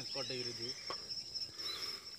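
An insect trilling steadily on one high pitch.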